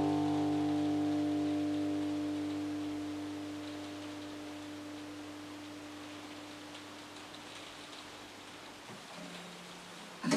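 The final strummed chord of an acoustic guitar ringing out and slowly dying away over a faint hiss, with a soft low tone sounding briefly near the end.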